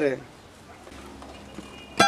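The end of a man's spoken word, then a pause with only faint, steady background noise before the music begins.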